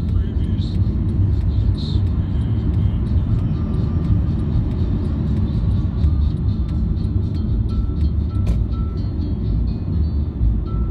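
Steady low rumble of a car driving at speed, engine and tyre noise heard from inside the cabin.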